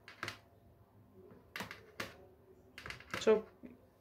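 A kitchen knife scoring soft dough in a round metal baking tray, giving a few sharp clicks as the blade meets the tray.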